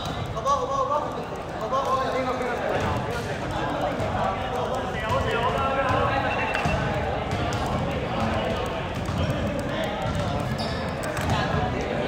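A basketball bouncing on an indoor court among players' voices and calls, echoing in a large sports hall.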